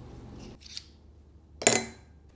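Small metal bow parts and tools handled on a workbench: a faint scrape, then near the end one sharp metallic clink that rings briefly.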